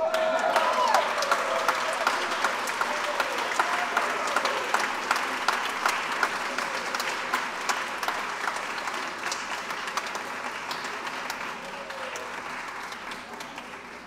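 A congregation applauding: dense clapping that starts at once and slowly thins and fades, with a few voices among it.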